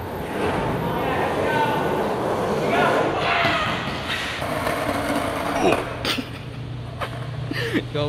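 Skateboard wheels rolling on a concrete floor, with voices in the background. About six seconds in and again near the end come sharp slaps and clacks as the board and rider hit the ground in a fall.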